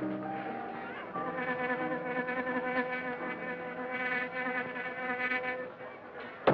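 Dance-band music: several sustained notes held together as slow chords with a slight vibrato, the chord changing about a second in.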